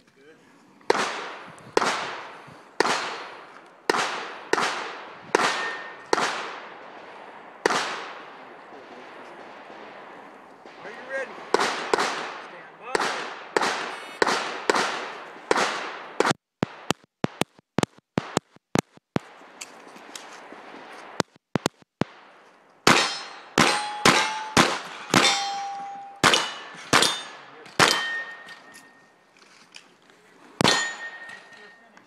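A string of pistol shots from a Smith & Wesson M&P handgun, fired in quick groups with short pauses between them. In the later shots, each crack is followed by a brief metallic ring, as hit steel plates sound.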